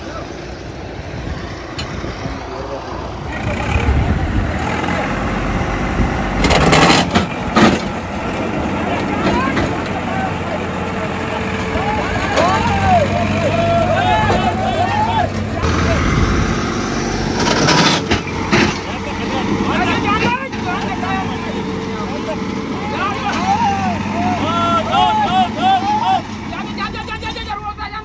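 Diesel tractor engine running steadily under load, with men's voices shouting over it. A short, loud rushing noise comes twice, about seven and eighteen seconds in.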